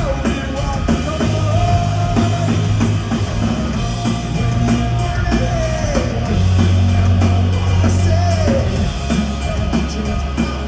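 Live hard rock band playing full out: distorted electric guitar, bass guitar and drum kit, with long held high notes that bend downward about halfway through and again near the end.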